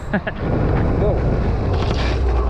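Wind buffeting the microphone as a Suzuki Burgman Street EX 125 cc scooter rides along during a rear-brake test at about 30 km/h, a steady low rumble that takes over less than half a second in, after a short laugh.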